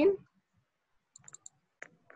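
Computer mouse clicking while a screen share is being started: a quick cluster of faint light clicks a little over a second in, then one sharper click near the end.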